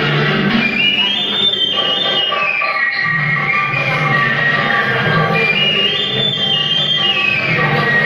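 Instrumental interlude of a Telugu film song played from a backing track: a high melody line climbs and falls in two matching phrases over a steady low accompaniment.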